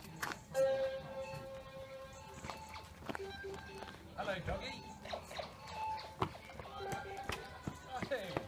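Quiet, distant voices of players. About half a second in, a steady electronic tone is held for roughly two seconds, and a few sharp clicks are heard; these fit laser-tag guns.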